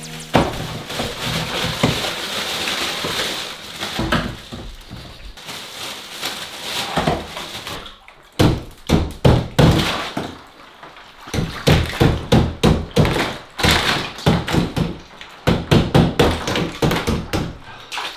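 Ice rattling and knocking in a bathtub of ice water: first a continuous rushing rattle, then from about eight seconds in a quick string of sharp knocks as a hand stirs the ice cubes against each other and the tub.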